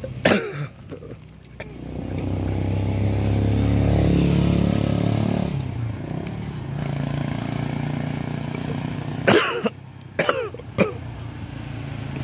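Motor vehicle engine and road noise while riding along a road, swelling louder for a few seconds around the middle. A few short coughs or throat sounds break in near the end.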